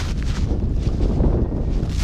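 Wind buffeting the microphone, a steady low rumble with no distinct events.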